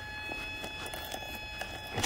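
Quiet background hiss with a few faint steady high-pitched tones and several light clicks as the RC monster truck's wheel and chassis are handled.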